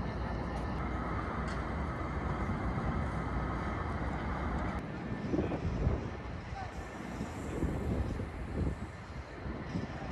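City street ambience: a steady hum of traffic with a low rumble and faint voices of passers-by. About five seconds in, the sound drops abruptly to a quieter, thinner city background with a few brief faint sounds.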